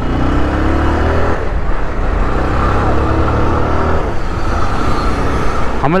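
Motorcycle engine pulling the bike along, its pitch climbing twice as it accelerates through the gears, over a steady rumble of wind and road noise on the camera mic.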